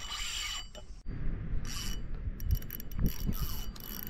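Spinning fishing reel being worked against a hooked fish: quick mechanical clicks from the reel's drag and gears, over a steady low rumble of wind on the microphone. A brief hiss at the start.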